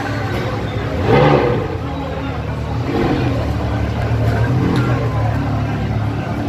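A Ferrari's V8 engine running at low revs as the car creeps forward: a steady low hum that grows a little louder in the second half, with people talking over it.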